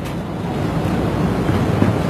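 Steady rushing background noise, strongest in the low range, with no distinct event.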